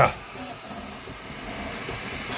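Flashforge 3D printer running mid-print: a steady whirring hiss from its cooling fans and motors.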